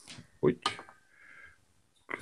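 A man's short "oh" exclamation, then a faint, brief scratching of chalk drawing a curve on rusty steel.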